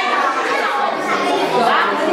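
Several children talking and calling out over one another, a steady chatter of overlapping young voices.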